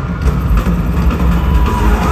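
Loud live pop music over an arena sound system, with a heavy pulsing bass. A held high tone comes in near the end.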